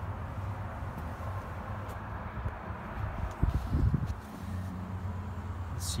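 Handling noise on a handheld camera's microphone as it is moved into a car's cabin: a cluster of low thumps and rumbles about three and a half seconds in, over a steady low hum.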